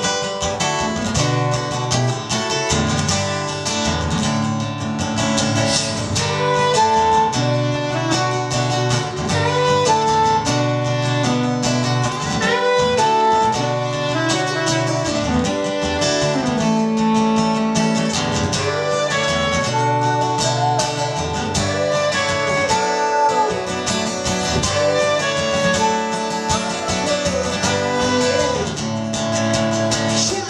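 Acoustic guitar strummed steadily while a saxophone plays an instrumental melody over it, with held notes and some bent slides between them.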